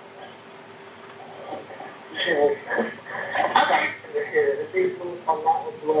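Recorded emergency phone call: a steady low hum on the line for about two seconds, then voices talking, too unclear to make out.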